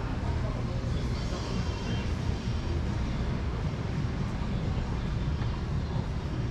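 Steady low rumble of city background noise, distant traffic hum.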